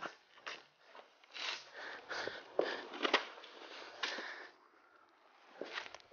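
Rustling and fastening sounds of a bull rider's protective vest being put on: a string of short scuffs and scrapes of fabric and straps for about four seconds, then quieter.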